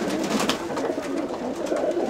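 Domestic pigeons cooing softly in a small loft. There is a sharp click about half a second in.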